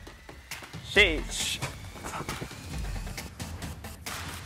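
A man's shouted count about a second in, over background workout music.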